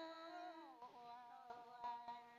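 A woman's voice singing a Red Dao folk song softly, the end of a phrase. A long held note fades and slides down about half a second in, then settles on a quieter, lower held note, with a couple of faint clicks.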